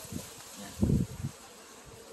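Wind buffeting the microphone in uneven gusts, with the strongest low rumble just under a second in.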